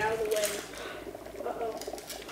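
Faint speech in the background, with no distinct non-speech sound standing out.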